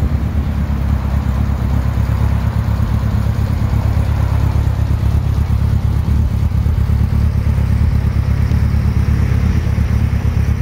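Suzuki GSX1400's air/oil-cooled inline-four idling steadily through an aftermarket exhaust.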